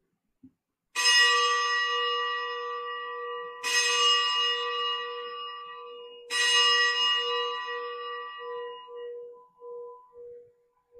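A consecration bell struck three times, each strike ringing out and slowly dying away, its low tone pulsing as it fades. It marks the elevation of the host just after the words of consecration at Mass.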